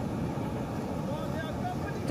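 Steady low rumbling background noise, with faint voices about halfway through.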